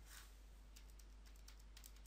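Near silence: quiet room tone with a few faint, irregular clicks like keys being tapped.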